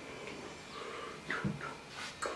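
A baby's faint short vocal sounds, two brief rising squeaks about a second and a half in, against a quiet room.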